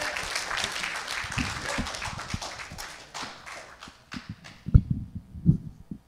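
Audience applauding, fading out about four seconds in. Then a few low thumps and knocks as a clip-on microphone is handled near the end.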